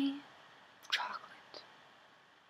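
A young woman's voice whispering a word or two about a second in, after the tail of a spoken word, with quiet room tone between.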